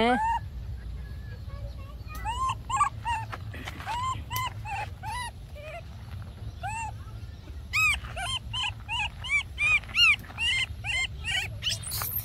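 Baby macaque crying in a string of short, high, arched squeaks, two or three a second, in one bout a couple of seconds in and a longer one near the end.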